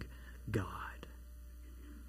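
One softly spoken word about half a second in, then a low steady electrical hum under quiet room tone, with a faint click near one second.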